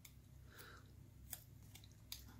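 Near silence with a few faint clicks, one a little sharper about a second and a half in: small craft scissors being handled and snipping a paper label sticker.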